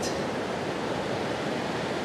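Ocean surf washing steadily onto a beach, a continuous even rush.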